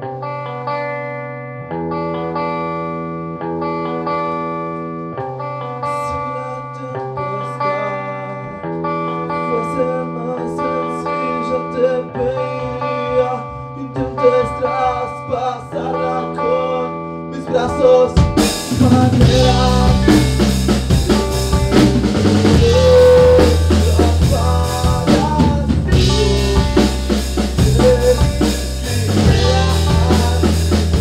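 Rock band rehearsing, recorded through a phone's microphone in the room. Guitar chords ring out and change every second or two, then the drum kit and full band come in loudly about eighteen seconds in.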